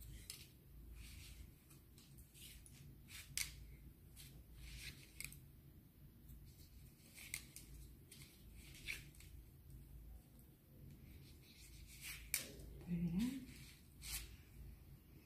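Hairdressing scissors snipping through hair in short, separate cuts at uneven intervals, a snip every second or two, soft and close.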